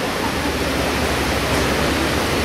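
Steady hiss across all pitches, with a low rumble joining about a third of a second in.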